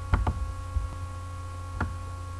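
Steady electrical hum, with a few short clicks: two in quick succession just after the start and one near the end.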